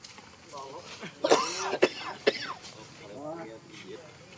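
Infant macaque crying: a few short shrill squeals and whimpers, loudest just over a second in, with a falling whine near the end.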